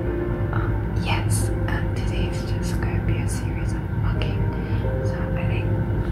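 A young woman speaking softly, almost in a whisper, over background music with long held notes.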